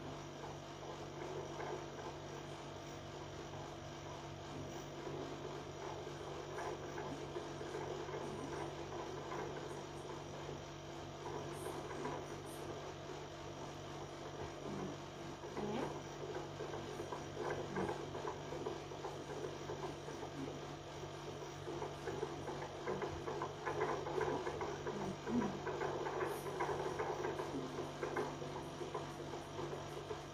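A steady electrical hum with a faint crackling noise over it, a little louder in the second half.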